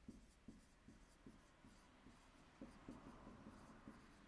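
Dry-erase marker writing on a whiteboard: a string of short, faint strokes and taps as a word is written out.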